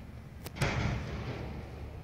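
Two quick sharp knocks about half a second in, followed by a short rush of noise that fades over the next second.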